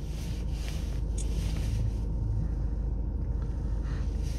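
Diesel engine of a VW Passat CC (CBB 2.0 TDI) idling steadily, a low rumble with a fast, even pulse, heard from inside the cabin.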